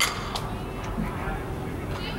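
Faint distant voices over the background hum of a large indoor sports dome, with a sharp knock right at the start and a second one a moment later.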